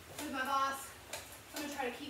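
A woman's voice making two short wordless sounds, each falling slightly in pitch, with a faint click between them about a second in.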